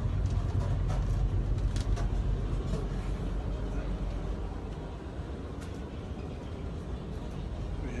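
Houseboat engine running as the boat cruises: a steady low rumble that eases off about halfway through, with a few light clicks.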